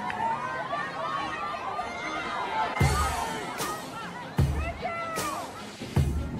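Many overlapping voices shouting and calling at once, with music on a slow, steady beat coming in about three seconds in: a deep thump alternating with a sharp crack.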